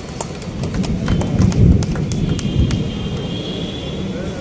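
Scattered sharp clicks at an uneven pace, over a low rumble that swells between about one and three seconds in.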